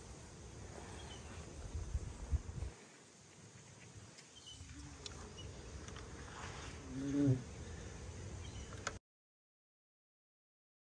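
Faint outdoor ambience with a low rumble for the first few seconds and one short voice-like sound about seven seconds in; the sound cuts off about a second before the end.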